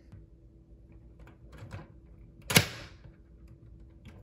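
LEGO Technic plastic parts giving one sharp clack about two and a half seconds in, with a few faint clicks of the pieces being handled around it.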